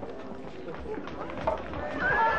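Indistinct voices of several people in the background, with a few short knocks.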